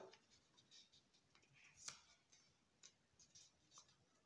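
Near silence with faint rustling of a small square of lined paper being folded by hand, including one slightly sharper crinkle about two seconds in.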